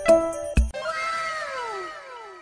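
Jingly cartoon music stops under a second in. It is followed by one long cat meow sound effect that slides steadily down in pitch, as from a disappointed cat.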